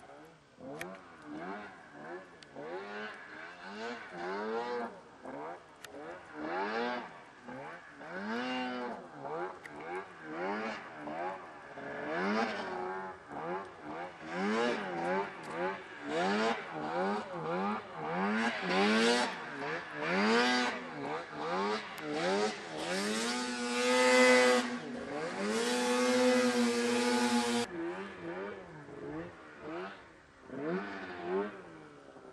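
Snowmobile engine revving up and down over and over, each rise and fall lasting about a second, then held at a steady high pitch for about four seconds late on.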